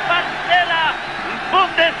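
A male TV commentator's excited voice in short outbursts, calling a goal, over steady stadium crowd noise.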